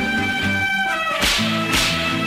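Instrumental interlude of an old Tamil film song: an orchestra plays held melody notes over a stepping bass line, with two sharp, crashing percussion hits about a second and a half in.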